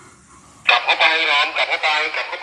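A person's voice speaking loudly, starting suddenly about half a second in after a short quiet stretch.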